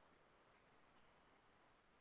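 Near silence: faint room tone in a pause of the speech.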